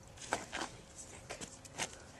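About five short, sharp crackles and taps at uneven intervals, from dry grass stems and leaves being handled.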